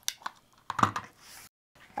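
A few sharp clicks, then a cluster of louder knocks as a plastic rotary cutter is handled and set down on a cutting mat and the acrylic ruler moved, followed by a brief soft rustle of fabric.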